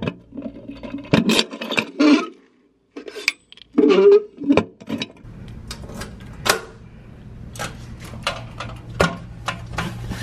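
Keys clicking and rattling in the lock of a metal post-office box, with knocks from its door opening and a parcel being handled inside. A steady low hum sits under the clicks in the second half.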